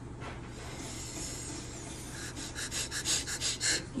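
A person breathing close to the microphone, ending in a quick run of short breathy puffs, about six a second, for a second and a half near the end.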